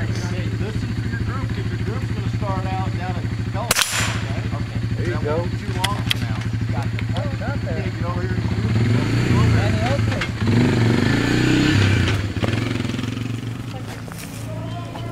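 A steady low engine hum runs throughout, with people talking in the background. A single sharp gunshot comes about four seconds in.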